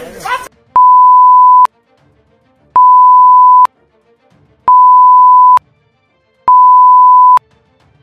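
Four loud, steady electronic bleep tones at one pitch, each just under a second long and about two seconds apart, with near silence between them, laid over the soundtrack of the footage.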